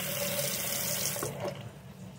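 Single-handle bathroom sink faucet running a thin stream straight into the drain, with a faint steady whistle while it flows, then shut off about one and a half seconds in.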